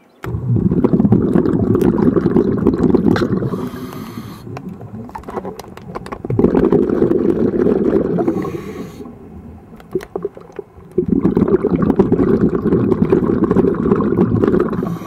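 Scuba diver breathing through a regulator underwater: three long bursts of exhaled bubbles a few seconds apart, with a quieter hiss of inhaling between them.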